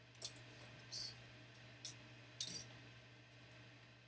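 Box cutter slicing open the seal of a small cardboard trading-card box, heard as about five short, crisp scrapes; the loudest comes about two and a half seconds in.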